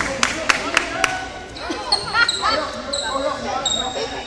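Basketball being dribbled on a hardwood gym floor, about four bounces a second, stopping about a second in. High sneaker squeaks on the hardwood follow.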